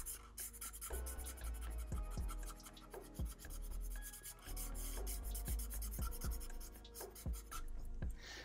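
Black felt-tip marker scratching on paper in many quick strokes as it fills in a small area solid black, with a few soft low thumps.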